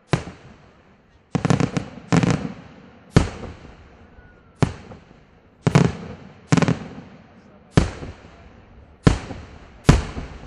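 Aerial firework shells bursting, about ten loud bangs roughly a second apart, each trailing off in echo. Some come as quick clusters of crackling reports.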